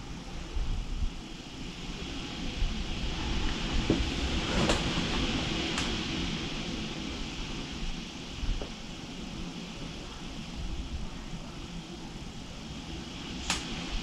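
Steady background noise that swells a little a few seconds in and slowly fades, with a few faint clicks.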